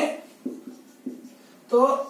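Marker pen writing on a whiteboard in a short pause between spoken words.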